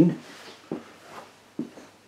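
The last syllable of a man's speech, then two soft footsteps about a second apart as someone walks away in a small room.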